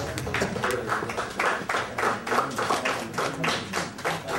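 Audience applauding: many hands clapping in a dense, uneven stream at a steady level.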